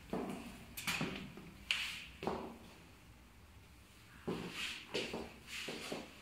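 Footsteps with a few sharp knocks and clicks, irregular and grouped in two bursts, as someone moves about a bare room.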